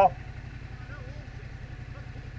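Yamaha Ténéré 700's parallel-twin engine running at low revs, a steady, evenly pulsing low rumble as the bike creeps along at walking pace.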